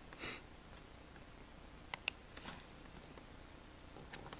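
A short sniff near the start, then two sharp clicks about two seconds in and a few faint ticks, from small hand tools being handled in a quiet room.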